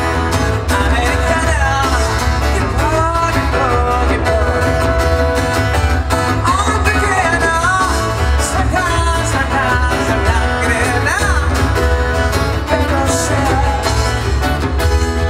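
Live acoustic pop band playing: acoustic guitars strumming over a steady beat, with a lead voice singing the melody.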